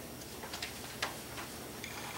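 Quiet room tone with a few faint, irregular clicks or taps.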